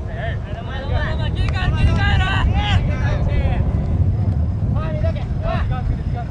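Players' voices shouting and calling across a football pitch during play, several calls overlapping, over a steady low rumble.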